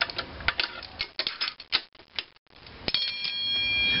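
Quick, uneven run of metal clicks and clinks from steel hand tools (wrenches) being handled and laid down. After a short pause, a steady high-pitched tone sets in near the end.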